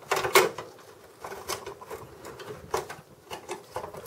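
Irregular clicks, knocks and small scrapes of a computer's front USB circuit board and its plastic guides being worked up and out of the steel chassis. The loudest cluster comes just after the start.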